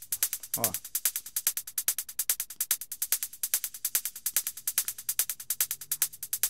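Electronic drum loop playing back, with fast, even percussive hits at about ten a second. The loop carries a subtle, short small-room reverb.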